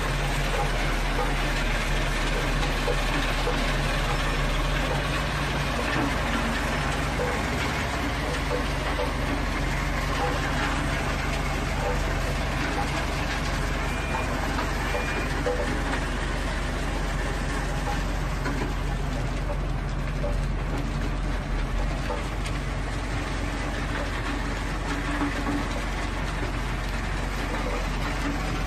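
2016 IMS MS842W mobile screening plant running under load: its engine drones steadily under the rattle of the screen and the gravel pouring off its conveyors onto the stockpiles.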